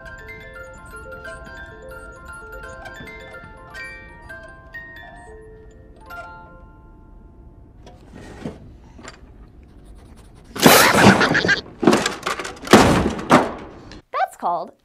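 Jack-in-the-box music box being cranked, plinking a tune in single notes that stops about six seconds in. A few faint clicks follow, then three loud, sudden noisy bursts near the end.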